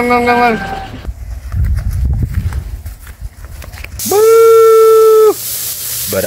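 Beef sate skewers sizzling on a charcoal grill from about four seconds in. Over the sizzle comes a loud, long, steady nasal call lasting just over a second. Just before that, a shorter held voice-like tone dies away near the start.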